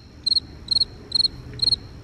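Cricket chirping at an even pace, about two short high chirps a second, starting and stopping with the pause in talk: the stock crickets sound effect for an awkward silence.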